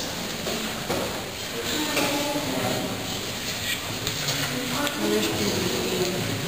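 Indistinct voices of people talking in the background, over a steady hum of room noise.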